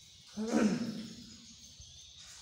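A man's short, rough voiced sound about half a second in, held briefly on one pitch and then falling away. Quiet room tone around it.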